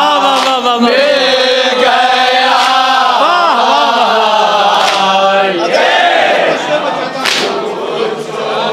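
A group of men chanting a noha (Urdu lament) together, led by one voice. A few sharp slaps cut through the chant, the loudest about seven seconds in, as in matam, the beating of the chest that goes with noha recitation.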